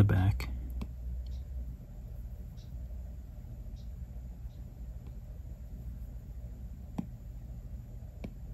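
Apple Pencil tip tapping on an iPad's glass screen: a few faint taps and one sharper tap about seven seconds in, over a low steady hum.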